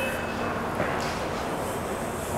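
Steady background noise, an even rush with a faint low hum and no distinct events.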